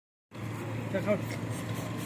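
A brief spoken word about a second in, over a steady low hum.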